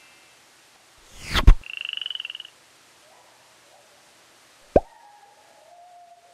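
Cartoon sound effects. A loud falling swoop comes about a second and a half in, followed at once by a short, rapidly pulsing frog croak. A sharp pop comes near the end, trailed by a faint held tone that sinks slightly in pitch.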